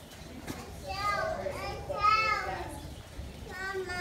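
A toddler's high-pitched excited squeals and calls: one stretch from about a second in, and a short one again near the end.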